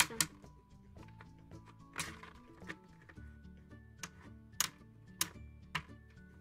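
Several separate plastic clicks and knocks as a toy parking garage's elevator platform is moved up its posts by hand, over soft background music.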